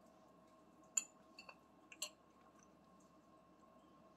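Faint sounds of eating a forkful of chicken pot pie: a few small clicks, sharpest about a second in and again at two seconds, over a faint steady hum.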